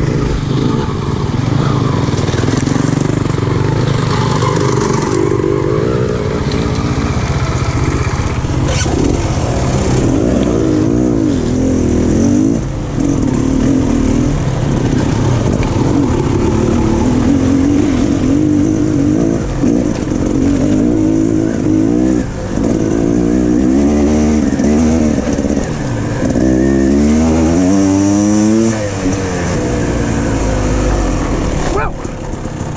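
Dirt bike engine running under a rider on a trail, the revs climbing and dropping again and again with throttle and gear changes. It has quick up-and-down sweeps in the last few seconds.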